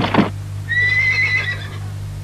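A horse whinnying once, a single high cry lasting about a second, over a steady low hum.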